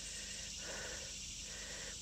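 Steady, high-pitched chorus of insects, with faint outdoor background noise.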